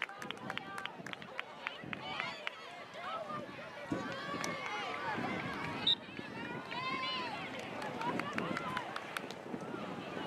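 Several people's voices calling and shouting across an open soccer field, overlapping one another, with scattered sharp ticks and a brief sharp spike about six seconds in.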